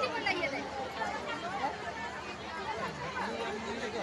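Crowd chatter: many people talking over one another at once, no single voice standing out.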